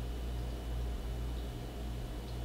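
Steady low hum with faint hiss: room tone, with no distinct sound events.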